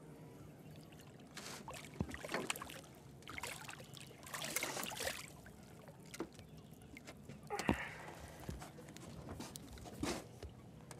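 A hooked crappie splashing and thrashing at the water's surface beside a boat hull, heard as a run of faint, irregular splashes. They come thickest about two to five seconds in, with another burst near eight seconds.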